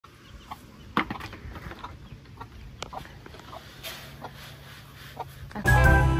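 Domestic chickens clucking softly in short scattered calls, with a couple of sharp knocks. Music starts loudly just before the end.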